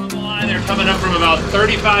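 Lobster boat's engine running steadily with a low rumble under a man's voice.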